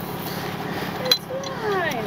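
Steady idling of a tow truck's engine, with a single sharp metallic clink about a second in as winch rigging is handled at the van's wheel.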